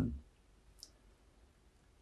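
Near silence: room tone, with one faint, very short high click just under a second in.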